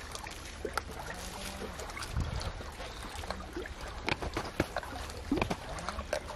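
A steady low rumble, with scattered short clicks and knocks that cluster and grow loudest between about four and five and a half seconds in.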